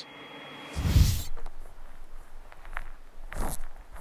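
Handling noise in a cockpit: a thump with rustling about a second in, then scattered light clicks and a short rustle near the end. No engine is running yet.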